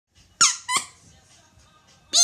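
Two short, high squeaks about a third of a second apart, each falling sharply in pitch.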